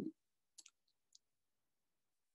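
Near silence in a pause in the talk, with a word ending right at the start and a few faint clicks about half a second and a second in.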